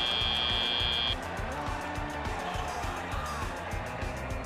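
FIRST Robotics Competition field end-of-match buzzer: one steady high tone that cuts off about a second in, marking the end of the match. Arena music with a steady beat plays underneath and on after it.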